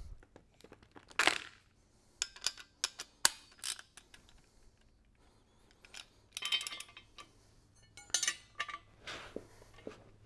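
Steel hand tools clinking and clicking: a socket and torque wrench being handled and a combination wrench set onto the nut of a bolted steel crossmember bracket. Scattered short metallic clinks come in small clusters with quiet gaps between.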